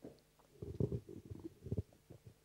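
A man drinking from a cup close to a microphone: a run of low, muffled sips and swallows lasting about a second, after a light knock at the start.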